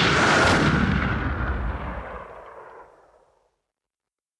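A noisy, boom-like crash sound effect that fades away over about three seconds, then silence.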